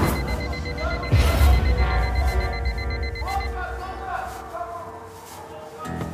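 Mobile phone sounding a rapid, pulsing high beep that stops about three and a half seconds in, over dramatic background music with a deep low boom about a second in.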